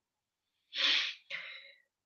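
A man sneezes: a sharp, breathy burst about two-thirds of a second in, followed by a shorter, weaker second burst.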